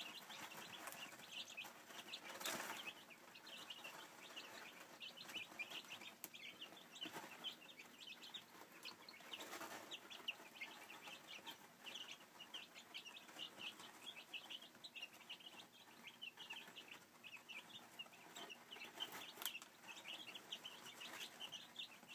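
A brood of week-old Silkie chicks peeping faintly and continuously, many short high chirps overlapping, with a few brief rustles as they scramble over the food and the litter.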